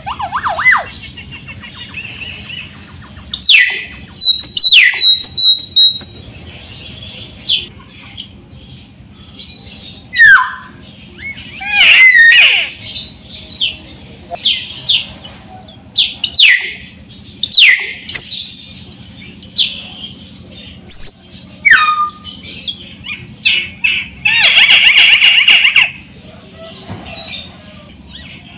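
Caged raja perling (Sulawesi myna) calling actively: a string of loud, varied whistles, falling sweeps and sharp notes with short gaps between them, ending in a harsh, buzzy call about two seconds long near the end.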